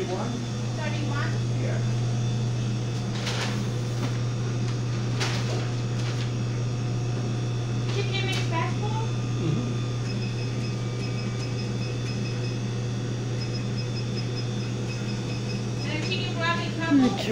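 Store ambience: a steady low machine hum with faint, indistinct voices and a few knocks. About ten seconds in, a rapid high-pitched electronic beeping starts and goes on for several seconds.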